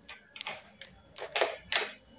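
A quick series of short clicks and rattles, the last few loudest: plastic toothbrushes knocking against each other and the plastic wall holder as one is put back.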